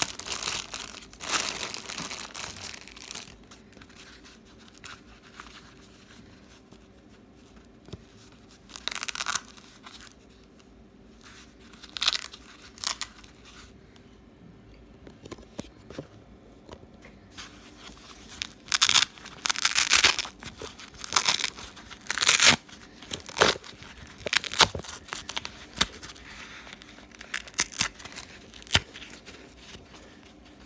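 Clear plastic packet crinkling as it is opened and handled. Later comes a run of several short ripping sounds about a second apart: the hook-and-loop (Velcro) straps of a fabric wrist brace being pulled apart.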